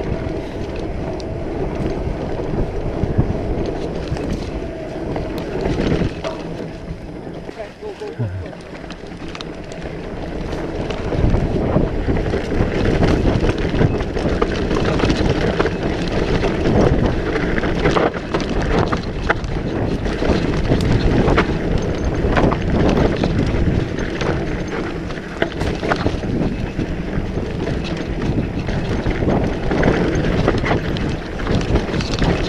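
Mountain bike riding a dry dirt and rock trail, heard from a camera on the handlebars: wind buffeting the microphone, tyres rolling over dirt and rocks, and the bike rattling and knocking over bumps. It gets louder about eleven seconds in.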